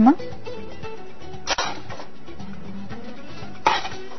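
Soft background music with two sharp clinks of kitchenware, one about a second and a half in and one near the end, as food is plated on a serving dish.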